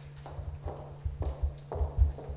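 Microphone handling noise: a series of irregular low thumps and knocks as a table microphone is gripped and worked on its stand, over a steady low hum.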